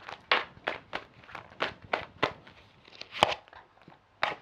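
Tarot cards being handled and shuffled: about a dozen short, uneven snaps and taps of card stock.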